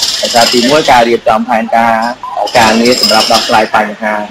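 Speech: a voice narrating a news report in Khmer.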